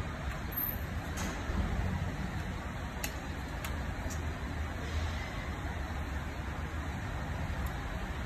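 Steady low rumble of parking-garage background noise, with a few faint clicks as an air rifle is handled, about one and three seconds in.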